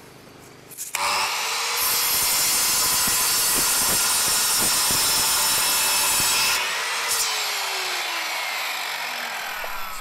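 Sliding compound mitre saw spinning up about a second in and cutting through a wooden board for about five seconds. It then winds down with a falling whine.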